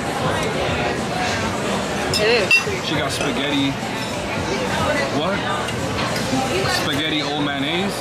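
Diners' voices chattering in a busy restaurant, with a fork clinking against a ceramic plate; one sharp clink about two and a half seconds in is the loudest sound.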